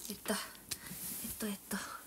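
A woman speaking quietly, close to a whisper, in a few short phrases.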